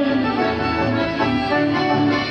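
Chamamé dance music played live: an accordion carries the melody over a steady bass in an instrumental passage with no singing.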